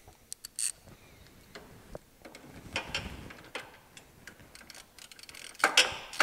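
Ratchet wrench with a 17 mm socket clicking in short, irregular runs as it tightens the nut back down on the go-kart's steering shaft, with a denser, louder run of clicks near the end.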